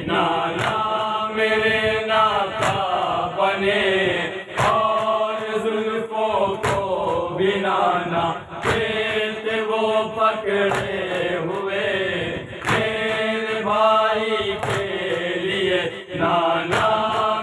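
Group of men chanting a noha (mourning lament) together, with sharp slaps of hands striking chests in matam about once a second, keeping time with the chant.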